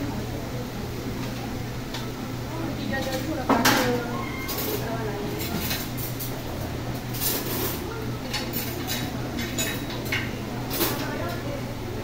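Commercial kitchen clatter: metal pans and cooking utensils clank and scrape, with the loudest clank about three and a half seconds in. Under it runs a steady hum and the hiss of fish deep-frying in a large pan of oil.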